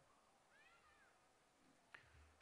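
Near silence in a pause of the speech, with one faint short call about half a second in that rises and falls in pitch.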